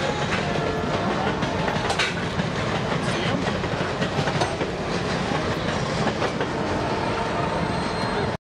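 Canadian Pacific Holiday Train cars rolling past at speed: a steady rumble of steel wheels on rail, with a few sharp clicks from the rail joints.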